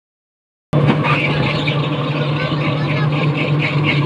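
Engine of a moving road vehicle running steadily with road noise, starting suddenly less than a second in. A light high pulsing repeats about four times a second over the hum.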